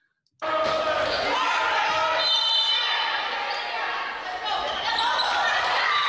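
Sound of a volleyball match recorded in a gym, cutting in suddenly about half a second in: many players' and spectators' voices shouting and cheering over one another, with a ball striking the hardwood floor, all echoing in the hall.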